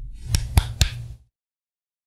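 Three sharp clicks about a quarter second apart over a low rumble of handling noise, lasting just over a second.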